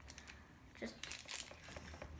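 Faint, irregular crinkling of baking paper, with a few light clicks, as a cake is turned out of a springform tin onto a plate.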